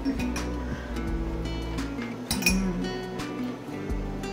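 Background music with held notes, over light clinks of plates, a sauce bowl and a spoon being handled; the sharpest clink comes about two and a half seconds in.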